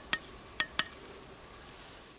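Pieces of porcelain clinking: four short, sharp clinks in two quick pairs, each with a brief high ring.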